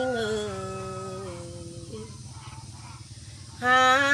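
A woman singing Thái khắp folk song: one long held note that slides slowly down in pitch and fades away, then after a short lull a loud new held note begins near the end.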